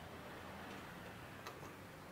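Faint street ambience with a low hum of distant traffic. There is a sharp tick about one and a half seconds in, followed closely by a fainter one.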